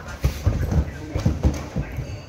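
A quick, uneven run of dull low thumps, about seven in two seconds.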